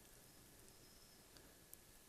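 Near silence: room tone with two faint mouse clicks about a second and a half in.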